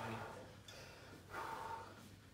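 A man's short, sharp breath, a gasp, about a second and a half in, from the burning pain of a freshly eaten Carolina Reaper pepper; the last words of a man's speech end just before.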